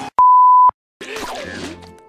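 A single loud, steady electronic beep of one pure pitch, about half a second long, starting and stopping abruptly, like a censor bleep. Dead silence follows, and the cartoon's music and voices come back about a second in.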